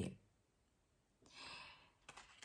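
A woman's soft breath out, a short sigh, a little over a second in, after a moment of near silence.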